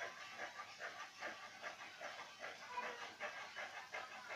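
Large steel tailoring scissors cutting through dhoti cloth: a faint, quick, even run of crisp snips.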